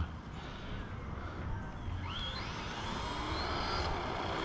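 Electric motor of a radio-controlled monster truck whining as it drives, the whine rising in pitch from about halfway in as the truck speeds up, over a steady background hiss.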